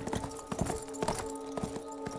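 A horse's hoofbeats as it is ridden off on the ground, an uneven series of knocks, heard from a TV episode's soundtrack with held notes of music underneath.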